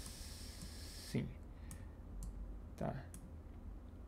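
Computer mouse clicking several times, single sharp clicks spread a second or so apart, while a spline vertex is dragged in 3ds Max. A short hiss fills the first second.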